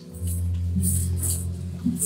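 Electronic keyboard playing soft, sustained low notes and chords as a church accompaniment.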